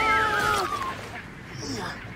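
A man's long, drawn-out shout held on one pitch, which breaks into a wavering, falling wail and dies away about a second in.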